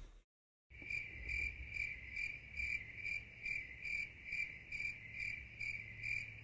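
Cricket chirping sound effect: a steady run of high chirps, about two and a half a second, starting abruptly after a moment of dead silence and cutting off just as abruptly, edited in as the comic 'crickets' silence gag.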